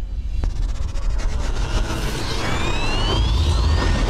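Cinematic intro soundtrack of an animated title video: a deep, continuous rumble with a rising whoosh that sweeps up in pitch over the last second and a half.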